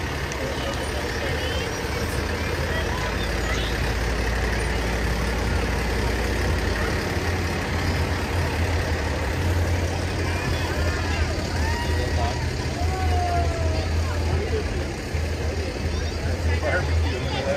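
Diesel engine of a heavy service truck running as it rolls slowly past, a steady low rumble, with crowd voices and occasional shouts mixed in.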